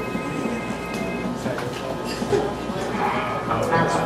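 Voices chattering in a bar room, with stray notes and clicks from a small band's instruments as it gets ready on stage; no song has started yet.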